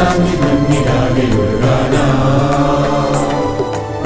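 Mixed choir singing a Malayalam song in held, chant-like tones over instrumental accompaniment, with a light percussion tick repeating at an even pace.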